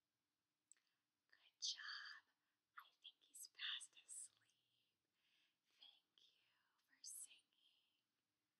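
A woman whispering softly in several short phrases.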